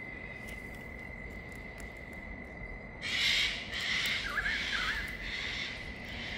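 Evening outdoor ambience: a steady high-pitched insect trill throughout. About halfway in, a run of harsh hissing pulses, about two a second, joins it, along with two short warbling bird notes.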